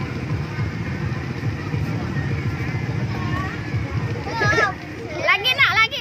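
Children playing on an inflatable bouncy castle: a child's high-pitched voice calls out briefly about four seconds in and again, louder, near the end, over a steady low rumble.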